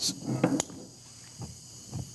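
Faint steady hiss of gas from a set of lit Bunsen burners, with a couple of short sharp sounds in the first half second as more burners are lit.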